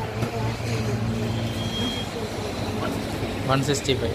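Quiet talking over a steady low hum, with one short high beep about a second and a half in.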